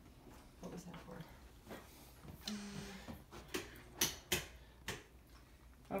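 A few sharp clicks and taps, the loudest two close together about four seconds in.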